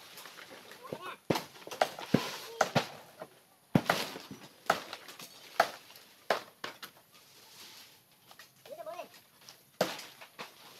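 A blade chopping through palm-leaf stalks: about ten sharp, irregular strokes, roughly one a second.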